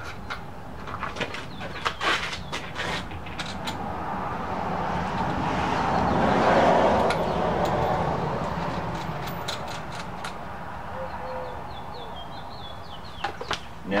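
Scattered light knocks and clicks of a leather rifle scabbard being fitted and bolted against a motorcycle's front fork. A broad rushing sound swells up and fades away through the middle, and a bird chirps a few times near the end.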